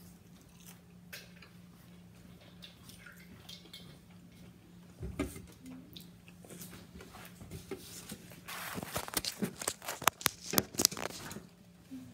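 Close-up eating sounds of a breaded jalapeño popper being bitten and chewed over a faint steady hum, building to a dense run of loud sharp crunchy clicks in the last few seconds.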